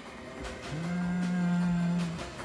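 A loud, low scare sound from the dark house: one long note at a steady pitch that starts under a second in and holds.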